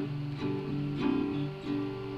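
Acoustic guitar played alone, without singing: about four strummed chords, roughly one every half second, each left to ring into the next.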